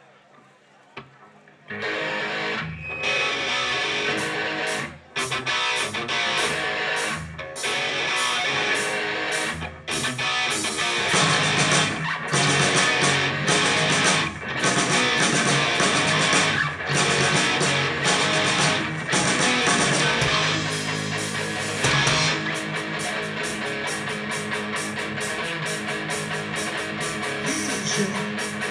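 Rock band playing live, electric guitars, bass guitar and drums, kicking in about two seconds in with an instrumental intro. The band drops out briefly for a few short stops early on, then plays on without a break.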